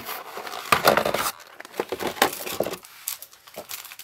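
Clear plastic bag crinkling and rustling as it is handled, in irregular crackly stretches.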